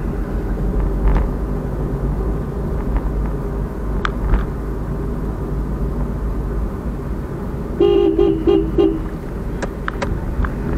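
A car horn honks four quick short toots about eight seconds in, over the steady low rumble of a car driving in traffic.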